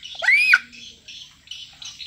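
A child's short, high-pitched shriek, rising then falling in pitch, lasting about half a second near the start.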